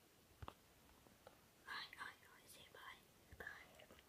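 Faint whispering, starting a little under two seconds in, with a couple of soft clicks before it.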